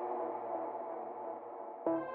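Electronic synth music: a repeating synth melody stops, leaving a sustained tail that slowly fades, then the melody comes back in suddenly near the end.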